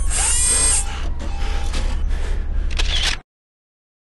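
Sound design for an animated logo: mechanical whirring and ratcheting effects over a low rumbling music bed, cutting off suddenly about three seconds in.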